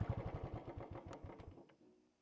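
Royal Enfield Bullet 350 single-cylinder engine idling with an even, quick thump, fading and stopping about three-quarters of the way in as it is switched off.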